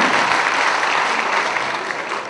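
Audience applause in a theatre hall: steady, dense clapping that gradually dies down.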